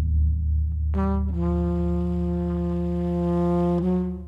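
Trumpet coming in about a second in with a short note that settles into one long, low held tone, stepping up briefly near the end. Underneath, the deep boom of a large drum rings on.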